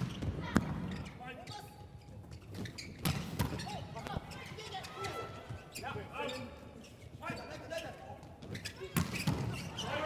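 A volleyball being struck during a rally: several sharp slaps of hand and forearm contacts a few seconds apart, echoing in a large indoor hall, with players' shouts between them.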